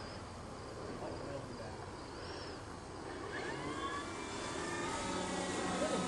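Electric motors and propellers of a large twin-boom radio-controlled P-38 Lightning model flying past, getting louder as it approaches, with a whine that rises in pitch in the second half.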